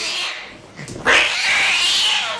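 Domestic cat yowling while held down by gloved hands for an examination. One long, loud yowl starts about a second in.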